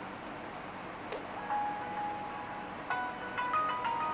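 Music playing from a Samsung smartphone's loudspeaker while the phone is sealed inside a DiCAPac waterproof case, still clear through the case: a simple tune of held notes that starts about a second and a half in, after a faint click.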